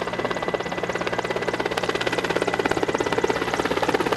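Helicopter flying low overhead, its rotor blades beating in a rapid, steady pulse over an engine hum.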